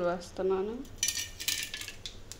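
Mustard seeds and chana dal dropped by hand into hot oil in an aluminium kadai, landing with a dense patter of small clicks on the metal for about a second, starting about a second in.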